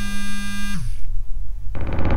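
Background music: a held synthesizer chord that slides off about a second in, over a low drone, then a sudden noisy whooshing hit near the end.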